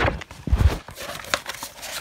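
Handling noise from unpacking posters close to the microphone: a heavy thump about half a second in, then scattered light knocks and crinkles of packaging.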